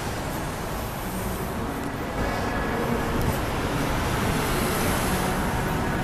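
City street traffic: a steady rumble of passing cars and other vehicles, growing a little louder about two seconds in.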